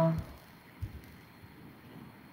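A woman's voice finishing a word at the very start, then quiet room tone with one faint low knock about a second in.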